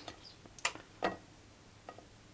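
Three short, light clicks of items being handled at a kitchen table, over quiet room tone. The first comes a little over half a second in and is the loudest.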